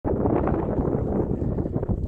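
Wind buffeting the microphone: a loud, gusting rumble with no tone in it, which falls away suddenly just after the end.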